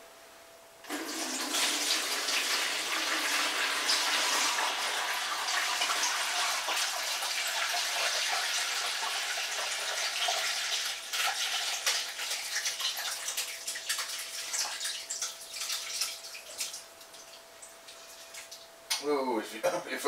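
Hot-side wort poured from a stainless stockpot through a colander into a fermenter, a continuous heavy splashing pour that starts about a second in. After about ten seconds it thins to broken trickles and drips as the pot empties and the colander, holding back the hops, drains.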